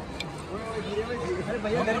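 Several people talking at once, with crowd babble behind.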